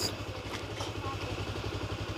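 Motorcycle engine running steadily at low revs, a low, even pulse, as the bike rolls slowly down a street.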